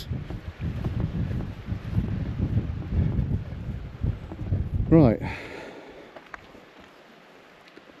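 Wind buffeting the microphone: a gusting low rumble that dies away after about five seconds. A short voice sound comes about five seconds in.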